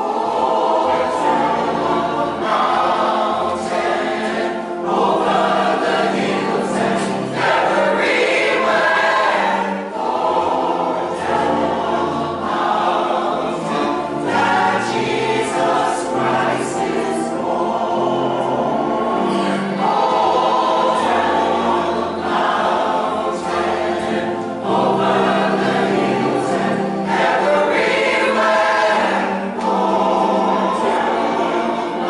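Mixed church choir of men and women singing a gospel hymn together, in phrases with short breaks between lines.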